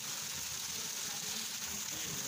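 A steady, even hiss of water.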